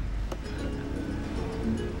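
Steady road rumble inside a moving van, with faint music under it and a single click about a third of a second in.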